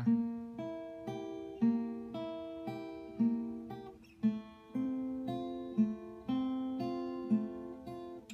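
Acoustic guitar fingerpicked slowly in an arpeggio pattern. Single notes are plucked one after another and left to ring, with a stronger bass note starting each group of lighter treble notes about every second and a half.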